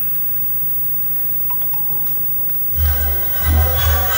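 Quiet hall with a few faint clicks, then near the end loud march music starts suddenly, with heavy bass-drum beats under sustained band chords, as the ceremonial colour guard moves off.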